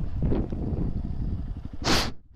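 Small motorcycle's engine running at low speed as the bike rolls along, with a light rush of wind on the helmet microphone. A short, loud rush of noise comes near the end.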